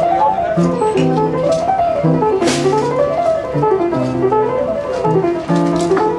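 Vintage Emerson upright piano being played with a mellow tone: flowing runs of notes that climb and fall about once a second over sustained low bass notes.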